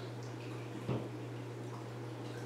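A steady low hum with one short, soft knock about a second in.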